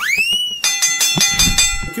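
An added transition sound effect: a rising slide-whistle-like glide, then a rapid run of ringing bell strikes lasting just over a second.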